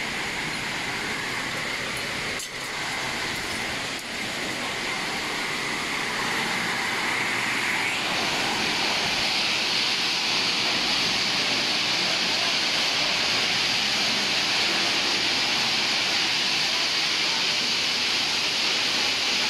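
Steady hissing machinery noise of an aluminium processing plant, growing louder and brighter about eight seconds in.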